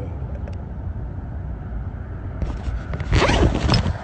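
Close handling noise: a clear plastic zip-top bag rustling and scraping against the microphone, starting a little past halfway and loudest near the end, over a steady low rumble.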